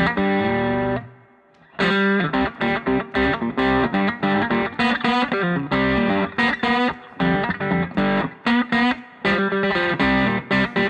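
Friedman Metro-D solidbody electric guitar with underwound humbuckers on the middle (both-pickup) setting, played through an amplifier: a held chord that cuts off about a second in, a brief pause, then a run of short, choppy chords and riffs.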